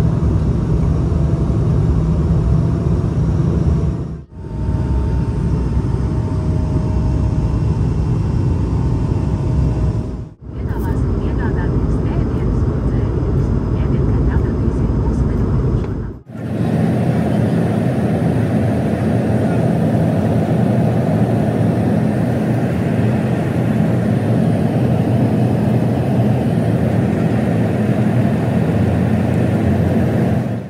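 Airliner cabin noise in flight: a loud, steady rush of engine and airflow noise, cut off briefly three times where the footage changes.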